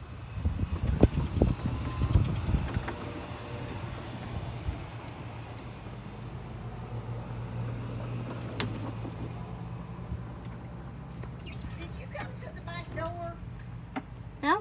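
A phone being handled against the microphone: rubbing and knocks in the first three seconds, over a steady low hum. There is a single sharp click near the middle, and faint voices near the end.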